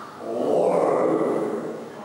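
A person's long, drawn-out 'whoa' vocalisation, swelling quickly and then slowly fading away.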